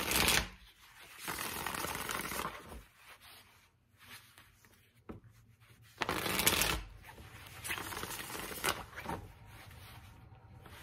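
A Spellcaster Tarot deck being shuffled by hand, in spells of card rustling. The loudest spells come right at the start and about six seconds in, each followed by a longer, softer run.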